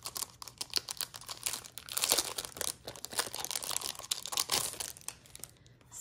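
Thin plastic packaging crinkling and rustling as it is handled and pulled open, a quick run of crackles that stops shortly before the end.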